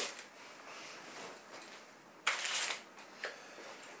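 Spring-loaded ACES or Humanics catch pole being worked: about two seconds in, a short rasp lasting about half a second as the noose cable slides through the pole, then a faint click.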